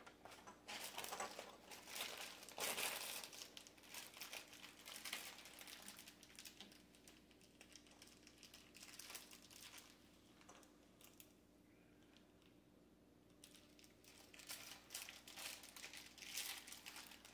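Hardware packaging crinkling and rustling in irregular bursts as screws are sorted through by hand, loudest in the first few seconds.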